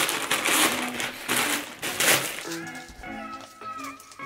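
A plastic poly mailer bag crinkling and rustling as it is pulled open by hand, loud for about the first two seconds. Then background music with a clear melody takes over about halfway through.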